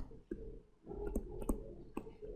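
Light clicks and taps of a stylus on a tablet screen while a word is handwritten: a handful of short, sharp ticks spread unevenly over two seconds, over a faint low hum.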